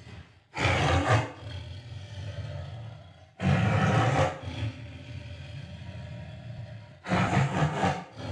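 Big cat roaring sound effect: three loud roars about three seconds apart, with lower rumbling growls between them.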